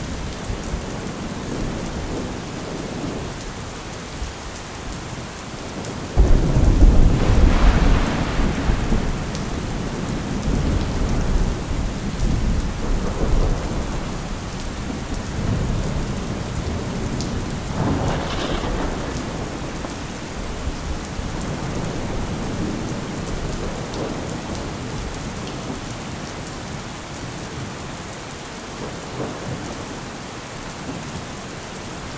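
Steady rain with thunder: a sudden clap about six seconds in that rumbles on for a few seconds before fading, and a second, lighter roll of thunder at about eighteen seconds.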